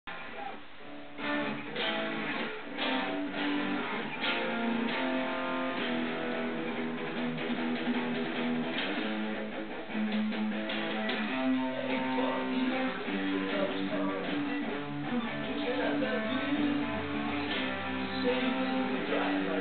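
Electric guitar played through an amplifier: a melodic instrumental line of picked, held notes and chords that starts about a second in, with bent, wavering notes in the second half.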